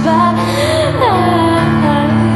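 A slow song: a woman singing a gliding melody over sustained piano chords.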